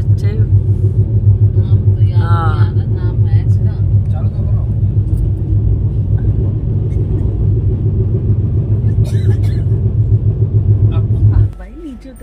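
Passenger train crossing a steel truss river bridge, heard from the carriage window: a loud, steady low rumble with a rapid rhythmic pulse from the wheels on the rails. It cuts off suddenly near the end.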